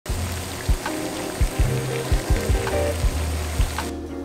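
Water at a rolling boil in a stainless steel saucepan: a steady bubbling hiss that cuts off sharply just before the end. Background music with a bass line and a beat plays under it.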